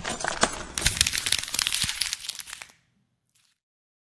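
Shattering sound effect: a sudden crash, then a dense run of crackling, debris-like clicks that stops about three seconds in.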